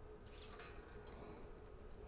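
Faint scratchy rustle of a steel guitar string being threaded through and handled at the tuner posts, strongest about half a second in, over a faint steady hum.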